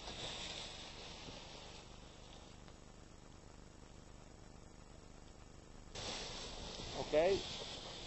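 Quiet outdoor ambience with a faint wind hiss that fades lower after a couple of seconds. About six seconds in, a louder hiss cuts in suddenly, and a man calls "ok" near the end.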